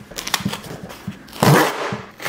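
Corrugated cardboard shipping box being ripped open along its tear strip: a run of short, irregular tearing noises, with the loudest and longest rip about one and a half seconds in.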